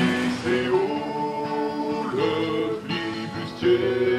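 Song with male voices singing over a strummed acoustic guitar, holding long notes.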